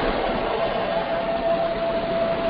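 Steady hiss of line noise from an open microphone on a web-conference call, with a faint steady tone running through it.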